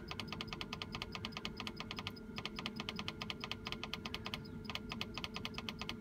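Field Mate 3 seed drill monitor ticking rapidly and evenly as its arrow key is held, each tick a step of the calibration weight counting down toward 300 grams. The ticking pauses briefly twice.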